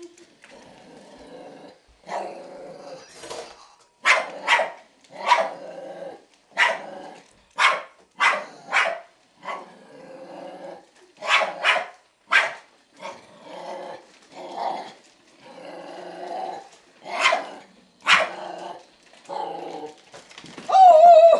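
Small dog barking at a toy on the floor: a run of sharp barks, about one or two a second, starting about two seconds in, with growling between them.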